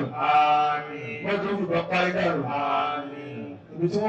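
A man's voice chanting in long, held melodic phrases into a handheld microphone, with a short break near the end.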